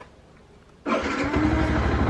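A Yamaha sport motorcycle's engine starting: it catches suddenly almost a second in and settles into a steady idle.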